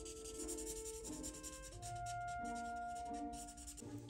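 Marker tip scratching across paper in quick repeated colouring strokes, over background music with slow, held notes.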